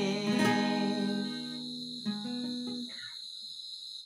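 Acoustic guitar playing the closing chords of a song: a strum about half a second in and a last note about two seconds in, left to ring and fade away. A steady faint high whine runs underneath.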